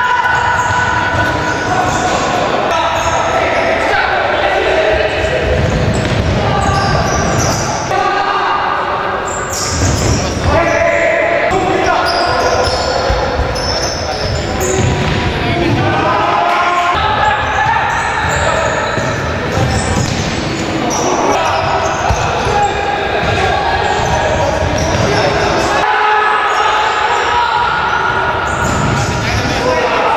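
Futsal match heard in a reverberant sports hall: the ball being kicked and bouncing on the wooden floor while players' voices shout across the court.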